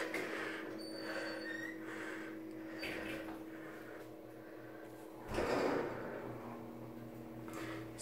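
Otis hydraulic elevator in motion, heard from inside the car: a steady hum, then a low rumble about five seconds in, after which the hum goes on at a lower pitch.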